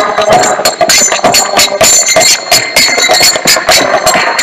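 Kirtan music: brass hand cymbals (karatalas) struck in a fast, steady rhythm with ringing overtones, along with drum strokes and a sustained held tone underneath.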